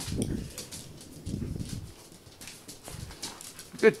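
Dogs moving about on a hard floor, with faint scattered clicks. Two low, muffled rumbles come right at the start and again around one and a half seconds in. A woman's voice begins "Good" at the very end.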